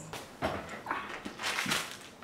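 About four light, quick footsteps of flat shoes on a hardwood floor.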